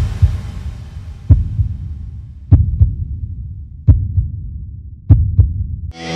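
Heartbeat sound effect: five deep double thumps, lub-dub, about every 1.3 seconds. Under the first two beats the tail of a guitar chord rings out and fades.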